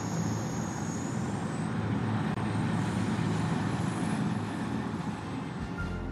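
Formation of military helicopters flying low overhead: a steady rumble of rotors and turbine engines, with a faint high whine that rises slightly.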